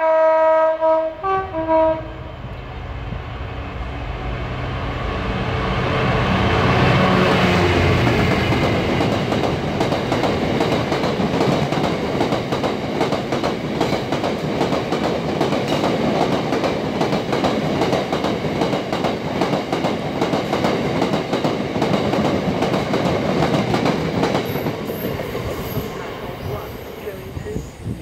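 Class 66 diesel freight locomotive sounding its horn in short blasts at the start, then passing at speed with its two-stroke V12 diesel engine loudest about seven seconds in. A long heavy train of box wagons follows, wheels rushing and clattering over the rails, fading away near the end.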